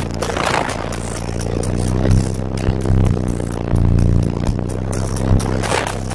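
Electronic music played at very high volume through four Sundown Audio ZV4 15-inch subwoofers, heard inside the car cabin, dominated by deep pounding bass. A noisy rush comes through about half a second in and again near the end.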